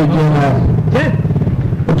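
A man's voice preaching, with a steady low hum underneath.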